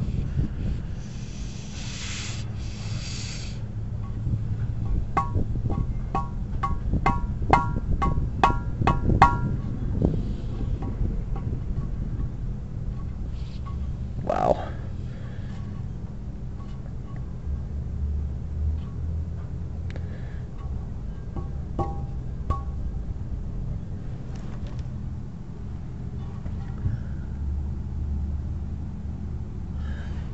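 Compressed air hissing briefly from a small valve on a motorhome's air suspension line as it is worked by hand, then a quick run of sharp, ringing metallic clicks and a later single knock, over a steady low hum. The valve is touchy and hard to shut off, which the owner suspects is why the suspension airbags leak down.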